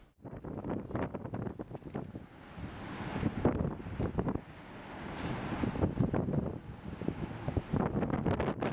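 Wind buffeting the microphone in uneven gusts, over outdoor street background noise.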